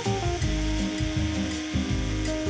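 Small electric drill boring a tiny hole through a short piece of wooden pencil, with background music underneath.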